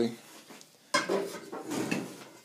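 Metal clattering and clinking that starts suddenly about a second in and fades: a bicycle rim with a brake disc being handled against a steel go-kart frame.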